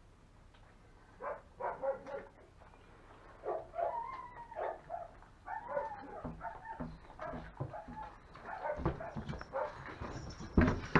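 German Shepherd dogs whimpering and whining in a string of short calls that rise and fall in pitch, starting about a second in, with a few soft knocks in the second half.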